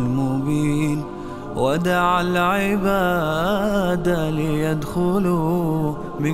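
Male voices singing an Islamic nasheed without words: a low voice holds a long note under a lead voice. The lead swoops up just under two seconds in and then sings long, wavering, ornamented vowels.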